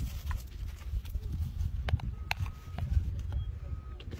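Spotted hyena biting into a watermelon: a few sharp crunches spread over a low rumble of wind on the microphone.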